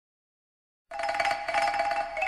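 Silence for about the first second, then the instrumental intro of a recorded Spanish-language love song starts suddenly with high, quickly repeated pitched notes.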